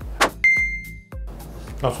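Edited-in sound effect: a quick whoosh, then a sharp, bell-like ding that holds one clear high tone for about half a second, over soft background music.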